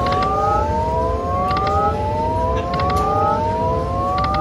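Timberwolf slot machine's electronic free-game spin sound: a chord of rising tones that glides upward again and again, about every second and a half, each rise starting with a short clicking sound.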